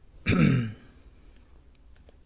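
A man clears his throat once, a short sound of about half a second with a falling pitch.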